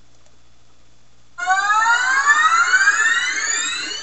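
A faint steady hiss, then about a second and a half in a loud siren-like sound starts suddenly: several tones gliding upward together in a long rising sweep.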